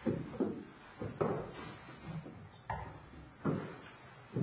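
A door being pushed shut near the start, followed by slow, evenly spaced footsteps on a hard floor, about one step every three quarters of a second.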